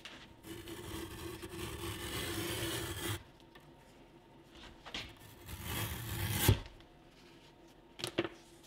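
Veg tan leather strap being drawn through the blade of a hand leather splitter, a rasping scrape as it is shaved down to about four ounces thick. The first pass lasts about three seconds. After a short pause a second, shorter pass follows and ends in a sharp click.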